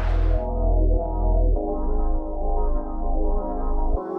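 Background music: a synthesizer piece over a low bass line whose notes change about every half second.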